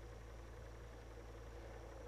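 Quiet, steady low hum with faint hiss and no distinct event: background noise only.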